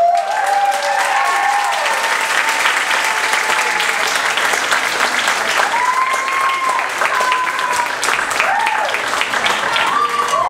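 Audience applauding and cheering, with several long whoops rising and falling over the clapping, loudest near the start, again about six seconds in and near the end.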